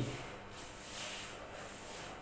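Paintbrush stroking wall paint onto a plastered wall: a few soft rubbing swishes.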